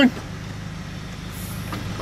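Vehicle engine idling steadily, a low even hum heard from inside the cab.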